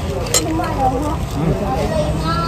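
Background voices of people talking, with no clear words, over a steady low rumble of a busy open-air eating area. A single sharp click comes near the start.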